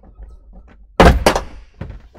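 Hydraulic door ram of an Enstrom 280FX helicopter being pried and popped off its ball joint while the door is wiggled: light clicks, then a loud metal clunk about a second in, a second knock just after and a smaller one near the end.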